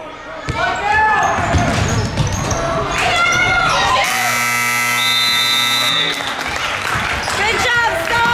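Gym scoreboard buzzer sounding one steady electronic horn note for about two seconds, about four seconds in, as the game clock runs out: the end-of-game horn. Before it, voices shout in the gym.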